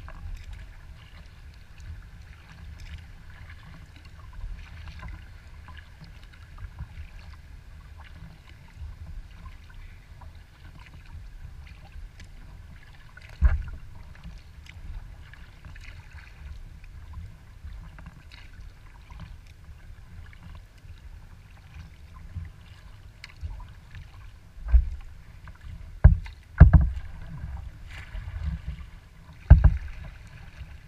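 Water lapping and splashing against a kayak's hull as it is paddled across open lake water, over a steady low rumble. Several sharp low thumps of water slapping the hull stand out, one near the middle and a cluster near the end.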